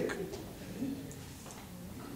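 A pause in a man's speech, with faint room tone and a brief, soft voiced murmur about a second in.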